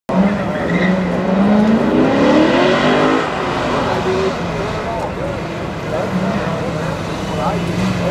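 Chevrolet C6 Corvette's V8 under hard acceleration on an autocross course. The engine pitch climbs steadily for about three seconds, drops back sharply as the driver lifts or shifts, then runs lower and steadier.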